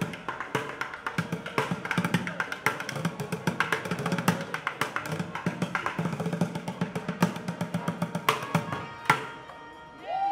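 Street bucket drumming: drumsticks beating a fast, dense rhythm on upturned plastic buckets. It stops with a final hit about nine seconds in.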